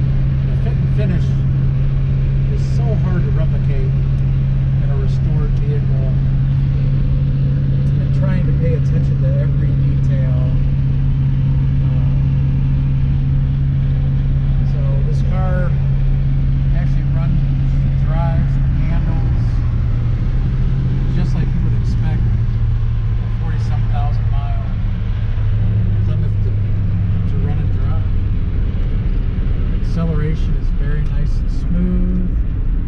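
Inside the cabin of a 1967 Plymouth Fury III on the move: a steady low engine and road drone, which drops in pitch in steps about two-thirds of the way through as the car slows.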